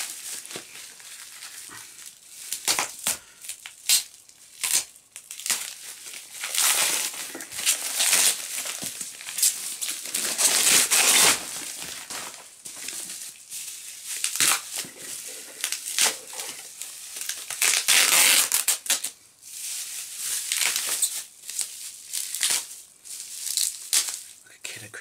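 Plastic mailing bag and bubble wrap being torn open and handled by hand, in irregular bursts of crinkling and crackling, loudest about halfway through and again about three-quarters of the way through.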